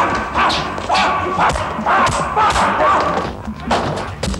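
Fistfight: a quick series of punch and body-blow thuds, about two a second, mixed with the fighters' grunts and yells.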